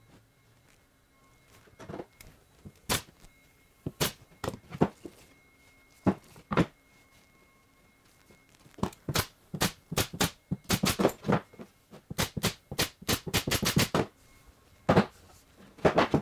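A series of sharp clicks and knocks from a pneumatic pin nailer and a claw hammer fastening a glued plywood stop onto a plywood template. A few come singly at first, then a rapid run of them lasts about five seconds.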